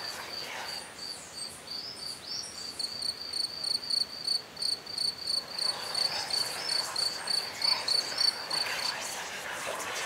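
A cricket chirping in a steady high-pitched rhythm of about three chirps a second, stopping shortly before the end.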